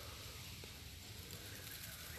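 Faint, steady outdoor background hiss with no distinct sounds; the hand oil pump's strokes are not heard.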